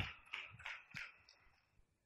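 Applause from a seated audience dying away: a few scattered, faint claps that fade out by about halfway through.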